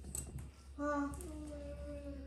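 A voice singing two held notes, starting about a second in, the second slightly higher than the first, over a steady low hum.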